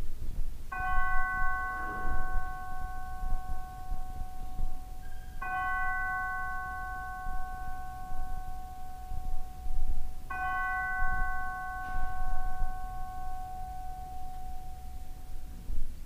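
Altar bell struck three times, about five seconds apart, each strike ringing clearly and slowly dying away. This signals the elevation of the consecrated host at the consecration.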